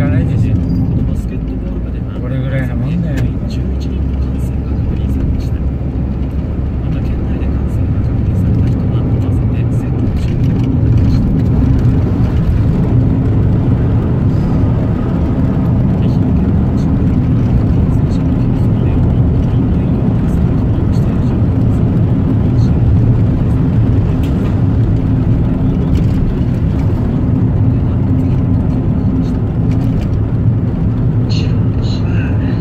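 A car driving along a paved road: a steady low engine drone with road noise.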